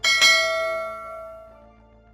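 A bright bell-like chime struck once, ringing with many overtones and fading away over about a second and a half, over faint background music.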